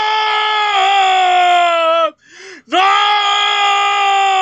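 A man's long, loud, wordless shouted cry on an open vowel, voicing anger. It is held steady for about two seconds, slides down in pitch as it ends, and after a quick breath a second long cry starts and holds.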